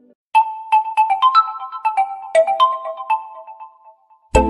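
Realme 9 phone ringtone: a quiet moment, then a melody of a dozen or so short, bright struck notes with no bass or beat, dying away near the end.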